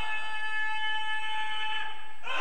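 A steady sustained tone of several pitches sounding together, like a held chord, fading out at the very end.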